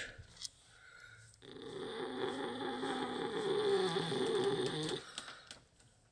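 Domestic cat giving one low, steady growl lasting about three and a half seconds while being stroked. It is the grumpy, defensive growl of a cat that is in pain and does not feel well.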